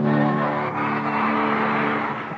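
Live rock concert sound: one long held chord with a noisy wash over it, easing slightly toward the end.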